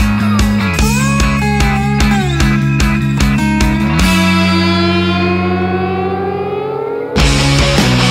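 Rock band music: electric guitar and drums playing a steady beat. About halfway through the drums stop and a held guitar chord rings on, its notes bending slowly upward. Near the end the full band crashes back in loudly.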